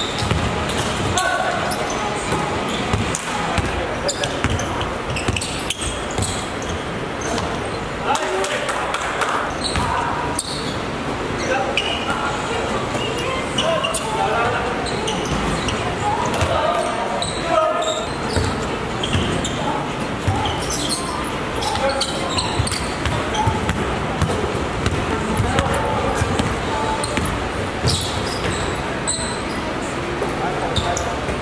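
Basketball bouncing on an indoor court during play, with players' short indistinct shouts and calls throughout, in a large hall.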